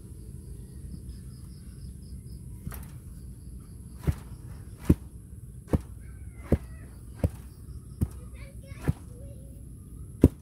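A hand tamper pounding soil to compact it: a weaker knock near three seconds in, then seven heavy blows at an even pace, a little over one a second.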